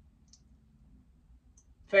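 Near-silent room tone with a faint low hum and two tiny, faint clicks; a woman's voice starts right at the end.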